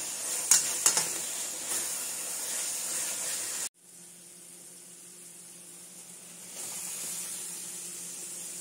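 Ground spice paste (shallot, garlic, ginger and chilli) sizzling as it fries in oil in a pan, with a metal spatula scraping and clicking twice about half a second and a second in. Just before halfway the sizzle cuts off suddenly and gives way to a quieter steady hiss with a faint low hum.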